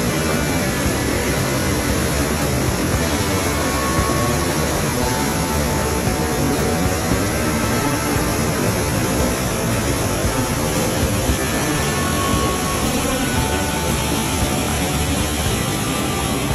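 Waterfall: white water pouring into a rock pool, a loud, steady rush of water.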